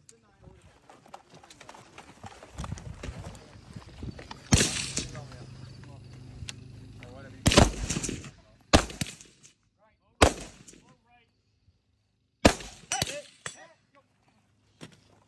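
12.5-inch AR-15 carbine with a mid-length gas system fired in single shots, six in all, spaced a second or more apart. The first comes about four and a half seconds in, and the last two come about half a second apart near the end.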